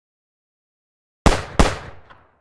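Two gunshot sound effects about a third of a second apart, starting a little over a second in, each a sharp crack with a short fading tail.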